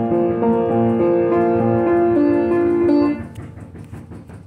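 Upright piano played in slow, held chords, then stopping abruptly about three seconds in. Faint rustling and knocking follow.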